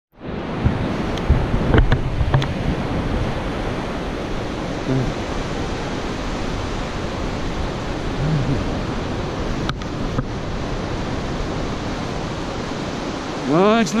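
Steady wash of ocean surf mixed with wind buffeting the microphone, with a few sharp knocks about two seconds in.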